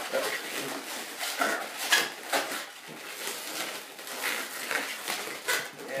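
Inflated latex twisting balloons (260s) squeaking and rubbing against each other as they are twisted into a pinch twist, an irregular string of short squeaks.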